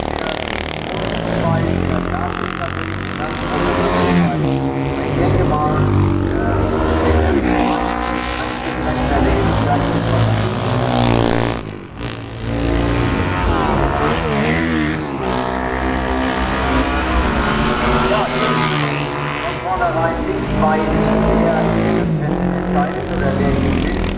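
Classic 500 cc racing motorcycles going past one after another under hard acceleration, loud. Their engine notes rise and fall as they come and go, with a short drop in level near the middle.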